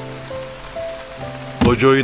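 A rain sound effect under soft background music of long held notes that step slowly from one pitch to another; a narrator's voice comes in near the end.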